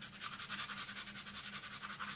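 Small metal hanging loop rubbed rapidly back and forth on a sanding block, about ten even, scratchy strokes a second, to strip its coating so the patina will take.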